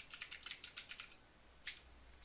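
Faint computer keyboard typing: a quick run of keystrokes over the first second, then a single keystroke near the end.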